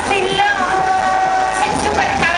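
Amplified fairground sound from the ride's loudspeakers: a long held note, drawn out for about a second with a bend at its start, over music and crowd noise.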